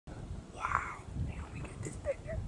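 A person whispering briefly, about half a second in, over a steady low rumble on the microphone.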